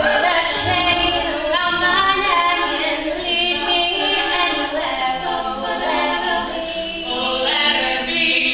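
Female a cappella group singing in harmony, several voices holding and moving between notes together with no instruments.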